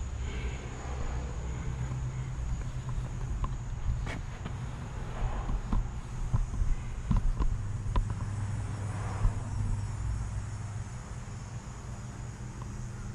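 Outdoor background sound: a faint steady insect trill over a low rumble, with a few scattered faint clicks and taps.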